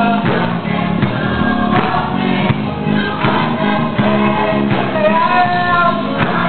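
Gospel choir singing full-voiced, sustained lines over accompaniment with a steady beat about every three-quarters of a second.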